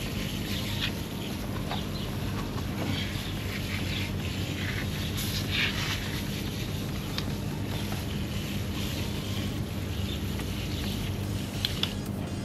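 Water from a garden hose spray nozzle hissing steadily onto alloy wheels and tyres, rinsing off a Simple Green degreaser. A steady low hum runs underneath.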